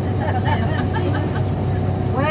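Inside a moving coach: the steady low drone of the engine and road noise, with faint chatter from passengers.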